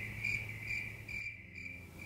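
Insects chirping: a steady high trill with fainter short chirps repeating about twice a second.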